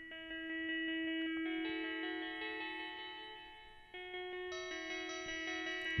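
Sampled guitar notes from the PlantWave app, triggered by the plant's electrical signal. Several notes ring and overlap over a held low note, with new higher notes entering every half second or so as the instrument is allowed a wider note range.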